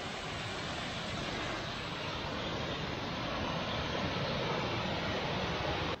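Waterfall rushing: a steady hiss of falling water that slowly grows a little louder.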